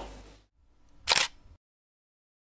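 A single short camera-shutter-like transition sound effect, about a third of a second long, about a second in, with dead silence around it.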